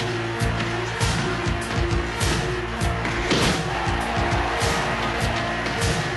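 Driving synth-and-drum film score with sustained chords and a steady beat, with sharp hits cutting through it, the loudest about three and a half seconds in.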